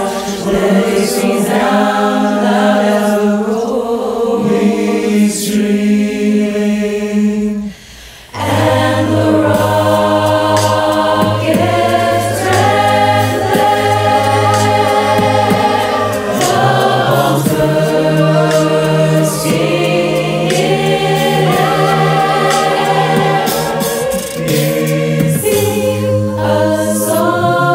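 A cappella choir singing in layered harmony, with no instruments. About eight seconds in the voices break off briefly, then come back in with a low sustained bass part under the upper voices.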